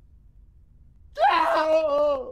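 A man's frightened, quavering cry, a single long wordless whine that starts a little past halfway and is held to the end.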